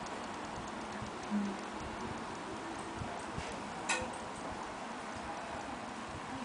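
Small clicks and taps from handling a squeeze bottle of chocolate sauce over a coffee cup, with one sharper click about four seconds in, over a steady low room hiss.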